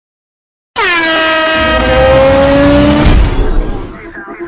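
Intro sound effect: a loud horn-like tone that starts suddenly about three-quarters of a second in and slides slowly down in pitch over a low rumble. A little after three seconds it breaks up into rumble and noise and dies away.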